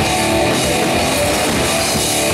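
Live heavy metal band playing loudly: electric guitar over a drum kit.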